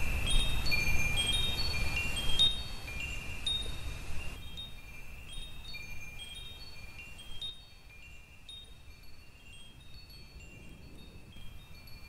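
Chimes tinkling: scattered high, bright ringing notes over a soft hiss, growing fainter in steps until faint by the end.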